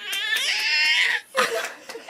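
Infant vocalizing: one long, high-pitched whining squeal lasting about a second, then two short sounds.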